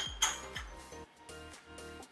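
Two quick glass clinks at the start, a bottle of homemade seltzer knocking against a drinking glass as the seltzer is poured, over quiet background music.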